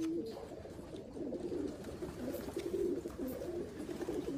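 Racing pigeons cooing: a soft, low, wavering coo that keeps on without a break.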